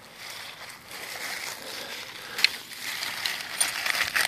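Footsteps crunching and rustling through dry fallen leaves, growing louder, with one sharp click about halfway through.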